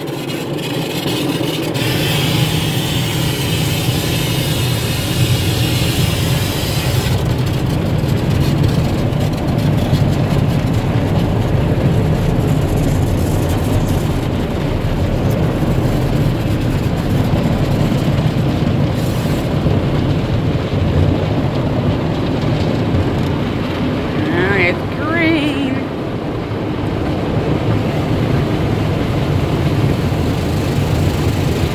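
Automatic tunnel car wash heard from inside the car: water spray and foam pelting the windshield and body over a steady low rumble. The rushing spray is heaviest in the first seven seconds, then eases.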